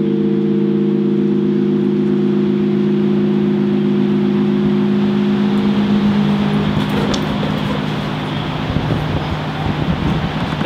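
Bronze tower-clock bell ringing on after a quarter-hour chime stroke: several steady tones that fade away about seven seconds in, over a steady rushing noise.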